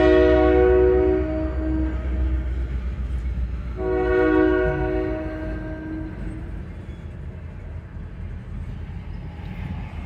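Diesel locomotive's multi-note air horn sounding two blasts, the first ending about a second and a half in and the second from about four to six seconds in, over the low rumble of a train of boxcars rolling past.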